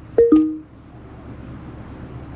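Two-note descending chime from the Lexus RX 350h's infotainment system, a short higher tone then a slightly longer lower one, sounding as the navigation finishes calculating a route. A low steady hum fills the cabin after it.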